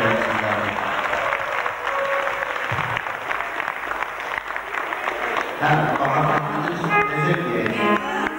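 A large audience of children clapping in a big hall, with music playing. About two-thirds of the way in the clapping thins and a voice and pitched music come in.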